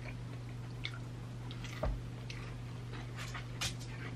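Person chewing fried chicken, with scattered short crackles and a soft low thump just under two seconds in, over a steady low hum.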